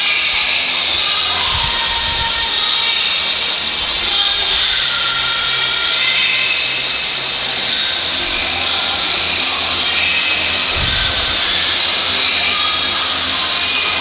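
Steady, loud din of a crowded boxing hall, with music playing over the hall's sound system.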